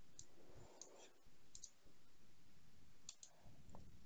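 Faint computer mouse clicks: a handful of short clicks, some in quick pairs, over quiet room tone.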